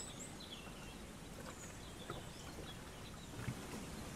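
Faint dawn chorus of songbirds: scattered short high chirps and whistled phrases over a low steady background hiss.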